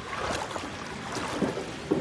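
Water lapping and sloshing in the shallows, a steady low rush with wind on the microphone.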